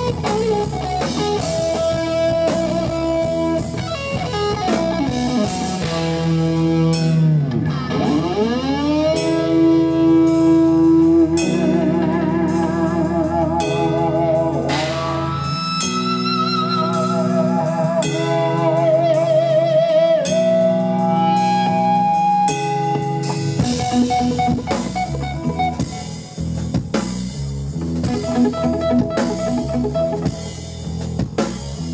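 Live instrumental rock band: an electric guitar plays a lead line over bass guitar and drum kit. Early on the guitar swoops deeply down in pitch and back up, then holds notes with a wide vibrato. The bass drops out for several seconds in the middle before the full band comes back in.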